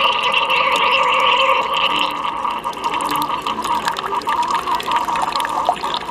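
Single-serve coffee brewer running, a thin stream of coffee pouring and splashing into a ceramic mug. The sound is steady and strongest for the first two seconds, then eases and turns rougher with small splashes.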